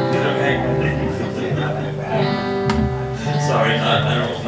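Live band music: strummed acoustic guitar with electric guitar and drums, holding long sustained notes.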